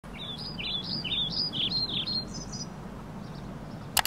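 Songbird chirping a quick run of short notes that rise and fall, stopping about two and a half seconds in, over a low steady outdoor rumble. A sharp click at the very end.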